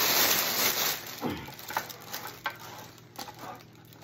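A clear cellophane gift bag crinkling loudly as it is handled around a basket, then dying down to a few short crackles about halfway in.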